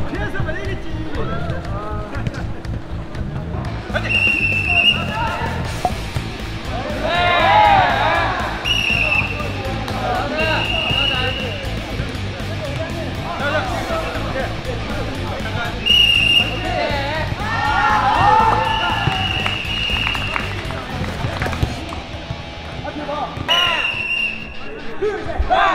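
Referee whistles blowing on a jokgu (foot-volleyball) field: about six blasts, mostly short, with one longer blast about two-thirds of the way through, over players' shouting and background music.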